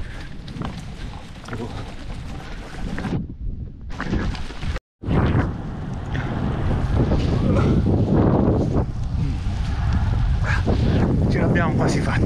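Wind buffeting the microphone of a camera carried on a moving bicycle, a steady low rumble. It cuts out completely for a moment about five seconds in.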